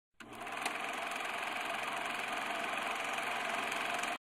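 Film projector running sound effect: a steady, rapid mechanical whir-clatter that starts suddenly and holds an even level.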